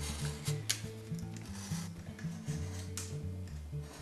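Quiet background music with a stepping bass line, with a few faint scratches from a craft knife cutting through a paper printout into hard card.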